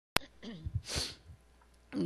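A sharp click at the very start, then a woman, fist to her mouth, gives a short voiced sound and one stifled cough about a second in.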